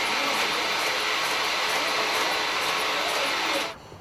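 Automated production line for double-ended blood-collection needles running: a steady hissing machine whir with faint fine ticking, cutting off shortly before the end.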